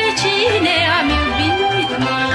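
Romanian folk song from Oltenia: a woman sings a wavering, ornamented melody with quick slides over a folk orchestra with a steady bass beat.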